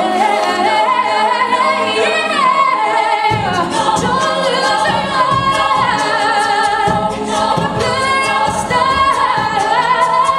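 Female a cappella group singing, a soloist's voice over the group's backing vocals. Lower voices and a rhythmic beat come in about three seconds in.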